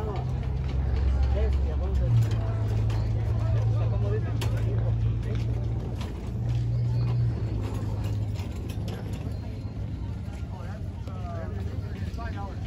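Scattered voices of an outdoor crowd over a low, steady rumble.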